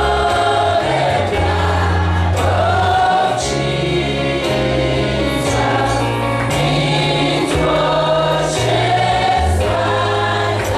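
Gospel worship music: a group of voices singing together over amplified instruments, with a deep bass line that moves in steady steps.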